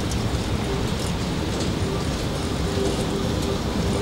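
A DÜWAG TW 6000 light-rail train rolling slowly past as it rounds a tight turning loop, a steady rumble of wheels and running gear with a faint hum that comes and goes.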